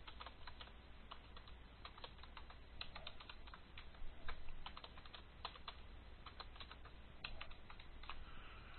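Computer keyboard being typed on: faint, irregular keystrokes in short runs, over a low steady hum.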